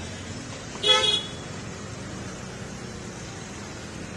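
A vehicle horn gives one short toot about a second in, over a steady hum of street traffic.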